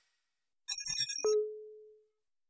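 Short electronic audio-logo sting: a quick flurry of high, glittery blips starts about two-thirds of a second in, followed by a single lower tone struck sharply that rings and fades out.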